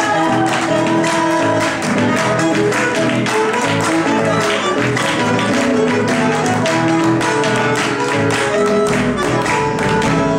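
Live folk band playing an instrumental passage: acoustic guitar and a bandoneón holding melody lines over regular strokes of a bombo legüero bass drum.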